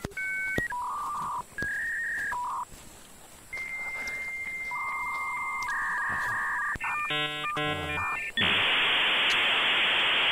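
Dial-up modem connecting: a few short dialled beeps, long steady answer tones, a burst of rapidly changing warbling handshake tones about seven seconds in, then a loud steady hiss of static from about eight and a half seconds.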